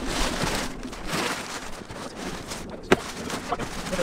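Cardboard boxes and packing material rustling and scraping as they are dug through and unpacked by hand, with one sharp knock about three seconds in.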